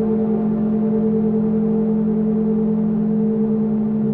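Crystal singing bowls and a modular synthesizer sounding together in a sustained drone: a steady low tone with a second about an octave above and fainter overtones, holding without change.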